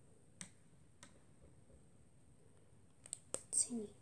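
Rubber loom bands snapping against fingers as they are stretched and pulled over one another: a sharp click about half a second in, another a second in, then a quick cluster of clicks near the end.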